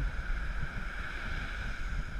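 Wind buffeting the microphone over surf washing onto the beach, a steady rushing noise with a low rumble.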